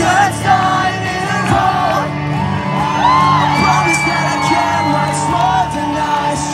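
Live rock music played loud through a club PA, electric guitar and singing, with voices shouting and whooping over it.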